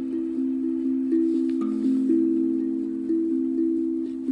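Hapi steel tongue drum tuned to the A Akebono scale, struck with mallets in a flowing melody of about three notes a second, each low, bell-like note ringing on under the next.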